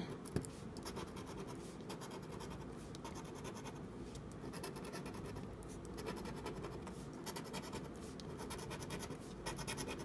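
Plastic scratcher tool scraping the coating off a lottery scratch-off ticket in runs of quick short strokes, fairly faint.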